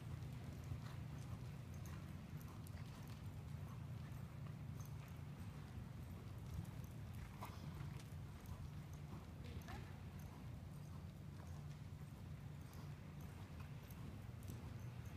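Hoofbeats of a horse trotting on arena dirt, faint clicks over a steady low hum.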